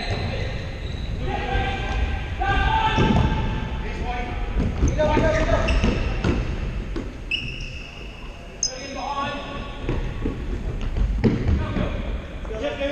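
A futsal ball being kicked and bouncing on a wooden hall floor, with a steady run of thuds, under players' indistinct shouts echoing around a large sports hall. There are a couple of short high squeaks about two-thirds of the way in.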